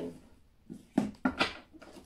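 A tarot deck being handled and shuffled: a few short, soft slaps and rustles of the cards, the loudest about a second in.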